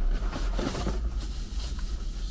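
Rustling and crinkling of packaging as a plastic bag and the wrapped car stereo are handled in a cardboard box, over a steady low hum.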